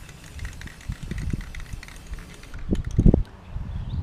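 Aerosol spray-paint can hissing steadily for about two and a half seconds, then cutting off, over a low rumble; a few dull thumps follow about three seconds in.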